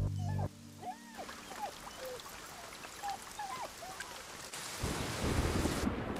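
Dogs whining in a string of short whimpers, each rising and falling in pitch, after music cuts off about half a second in. Near the end a low rumbling noise builds.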